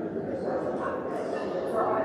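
Indistinct chatter of many people talking at once in a large church, steady throughout.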